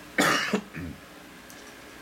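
A man coughs once, a short harsh burst about a quarter of a second in.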